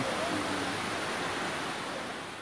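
Steady rushing of a waterfall, with a faint voice briefly in the first second.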